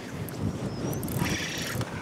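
Steady wind and water noise around an open boat, with a steady low hum underneath and a brief hiss near the end.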